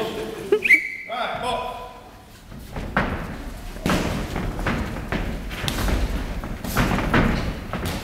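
A boxing bout in progress: a series of dull thuds in the ring, from about three seconds in, as the boxers throw gloved punches and move about. Voices are heard around the ring.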